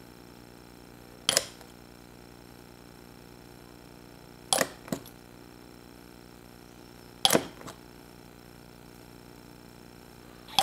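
Four sharp plastic clicks, a few seconds apart, from handling small plastic model-kit parts and a cement bottle's brush applicator, over a faint steady hum.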